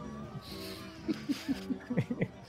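A person laughing in a quick run of short bursts about a second in, over steady soft background music.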